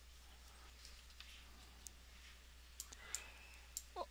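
Near silence: room tone with a few faint, scattered clicks, several of them bunched together in the second half.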